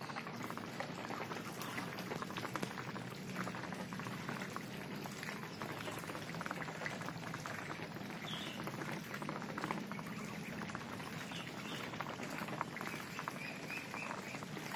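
Muscovy ducks dabbling with their bills in a muddy puddle: a steady, dense wet crackle of many small clicks and slurps.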